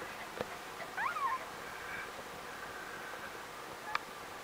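A two-day-old puppy giving one short, high, squeaky cry about a second in, its pitch sweeping up and then down, followed by fainter thin whining.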